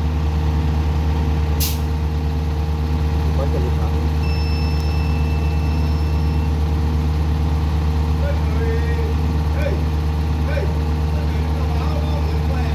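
Diesel engine of a mini excavator or the dump truck carrying it idling steadily. A sharp click comes about two seconds in, and a thin high steady tone sounds for about two seconds near the middle.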